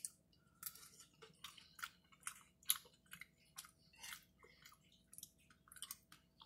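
Close-miked mouth sounds of a person chewing a spoonful of baked beans: faint, irregular wet smacks and clicks, about three a second.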